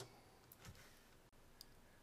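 Near silence with two faint computer-mouse clicks about a second apart.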